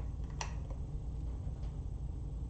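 Low steady background hum, with a single light click about half a second in and a fainter tick just after, as a resin mixing cup and silicone mold are handled.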